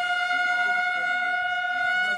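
A brass instrument holding one long, steady note that stops just at the end.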